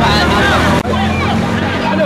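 A car engine held at high revs during a drift, a steady hum, with spectators shouting over it. The sound drops out briefly a little under halfway through.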